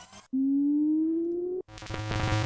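Synth riser sound effects auditioned one after another: a loud, pure tone slides slowly upward for about a second and stops abruptly, then a dense, hissy riser starts near the end.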